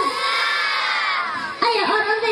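A crowd of children shouting together in one long held call that slopes down in pitch and fades out about one and a half seconds in.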